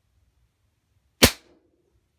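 A single sharp air rifle shot, a .22 pellet or slug striking the composite-toe safety shoe about a second in, with a brief low ring after it.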